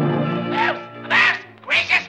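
Cartoon soundtrack: orchestral score with two short, high pitched vocal cries from a cartoon character, about a second in and near the end.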